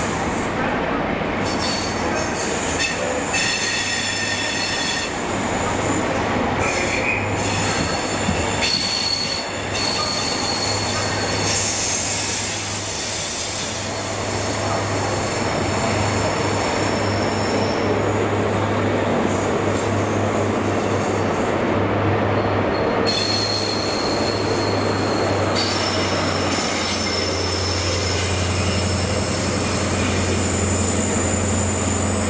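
InterCity 125 (HST) set with Class 43 diesel power cars pulling slowly out past the platform: a steady low diesel hum under the rolling coaches, with high-pitched wheel squeal coming and going. The hum grows louder near the end as the rear power car passes.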